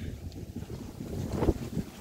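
Wind buffeting the camera microphone outdoors, a low, fluttering rumble, with a faint tick about one and a half seconds in.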